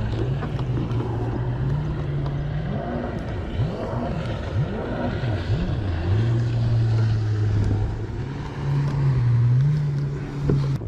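A boat engine droning steadily at a low pitch. The pitch shifts in steps, and a few quick rising-and-falling sweeps come through the middle, over a light wash of wind.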